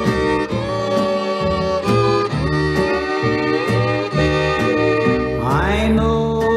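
Instrumental intro of a 1956 Nashville country record: two fiddles play the melody with slides over a steady rhythm guitar and alternating low bass notes. Near the end a fiddle slides upward into the start of the vocal.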